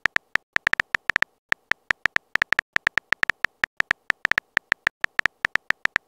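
Phone on-screen keyboard key clicks as a text message is typed, a quick run of short sharp ticks at an uneven rate of about six a second.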